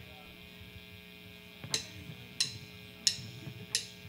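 Steady electrical hum from the idle stage amplifiers, then four sharp, evenly spaced clicks about two-thirds of a second apart in the second half: drumsticks clicked together, counting the band in to the next song.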